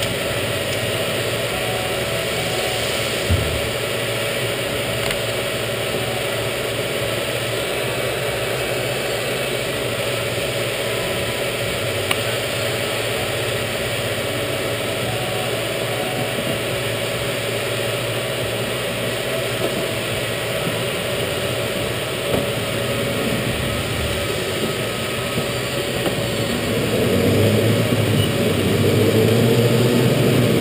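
Rental go-kart engines idling steadily while the karts wait in the pit lane. Near the end they get louder as the karts pull away.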